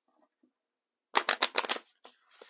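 A deck of brand-new oracle cards being riffle shuffled: a quick flutter of card edges snapping together, lasting under a second and starting about halfway in.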